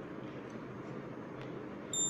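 Steady background noise, then a short high-pitched electronic beep starting just before the end.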